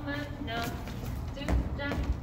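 A voice vocalising the dance rhythm in short sung syllables, over dancers' shoes stepping on a wooden floor, with a heavier step about one and a half seconds in.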